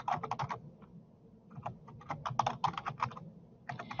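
Typing on a computer keyboard: a quick run of keystrokes, a pause of about a second, then a longer run, as a username and password are entered at a login page.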